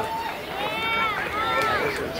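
A person's voice in two short phrases, fainter than the talk around it, with no music audible.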